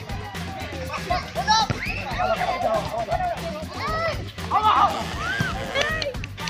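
Music with voices throughout: high, rising-and-falling calls or singing over a steady low beat, with players and onlookers calling out during a rally.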